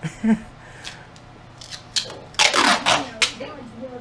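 Duct tape being pulled off the roll: a few short tearing rasps, then one longer, loud rip about two seconds in. A voice is heard over it.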